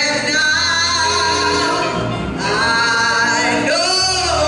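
A woman singing a gospel song into a microphone, holding long notes, over a low sustained bass accompaniment that changes pitch a few times.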